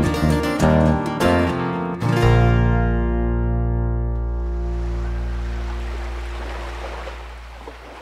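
Small band of acoustic guitars and keyboard strumming the closing bars of a song, ending about two seconds in on a held final chord that rings on and slowly fades away.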